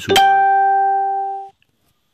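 A single bright musical note, struck suddenly and held steady for over a second, then cut off abruptly.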